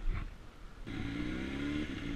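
Honda CBR sportbike's inline-four engine running at low revs as the bike pulls away, its steady note coming up about a second in.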